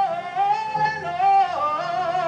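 A woman singing a solo gospel melody, her voice moving quickly through several notes in a run after a long held note.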